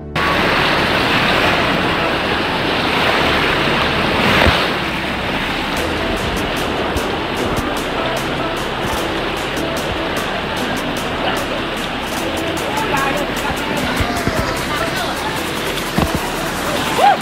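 Whitewater rapids rushing loudly and close to the microphone, a steady roar of churning river water with a louder surge about four seconds in.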